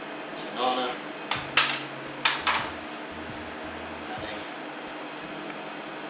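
A few sharp knocks and scrapes of kitchen utensils and containers against a stainless steel mixing bowl as mashed banana is added, clustered in the first half. A steady fan hum runs underneath.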